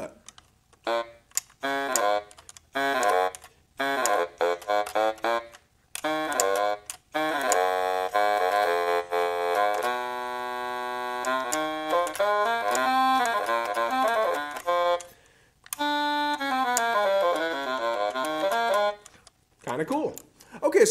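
Yamaha YDS-150 digital saxophone played on its baritone-sax voice. It starts with a few short phrases broken by pauses, moves into a long connected run of notes through the middle, and ends on a phrase that steps downward near the end.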